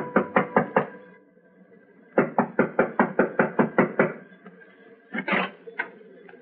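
Radio-drama sound effect of rapid knocking on wood, about five knocks a second. It comes in two runs with a pause of about a second between them, and a short rougher sound follows near the end.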